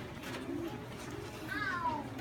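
Classroom hubbub: a low murmur of children's voices and movement, with a short high squeal that falls in pitch near the end.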